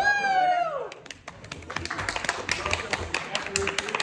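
A drawn-out vocal exclamation, its pitch rising then falling, in the first second, followed by a quick, irregular run of sharp taps that carries on.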